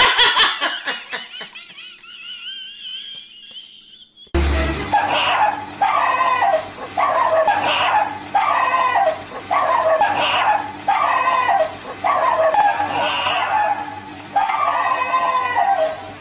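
A high cry rises and fades over the first four seconds. After a sudden cut about four seconds in, two dogs fighting give snarling barks in bursts about once a second.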